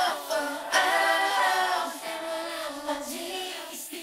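Isolated female backing vocals sung a cappella, several voices in harmony holding long notes, with a couple of brief breaks between phrases and a gradual softening toward the end.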